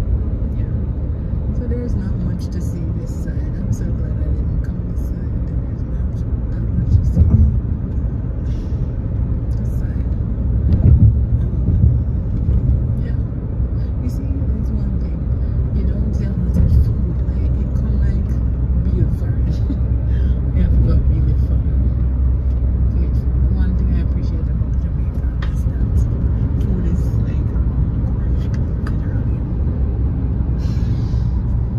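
Road and engine noise inside a moving car's cabin, a steady low rumble with a few louder swells, with voices talking underneath.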